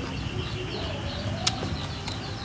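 Small birds chirping in quick repeated short notes, with one sharp click about one and a half seconds in.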